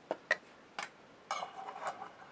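Faint handling noise from a cast-iron lathe tailstock body and flashlight being held and turned in the hands: three light clicks in the first second, then a short rustling scrape.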